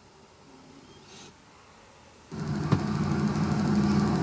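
Quiet at first; about two seconds in, a car engine starts to be heard running steadily with a low hum, as the soundtrack of a video played back through the car radio's speakers.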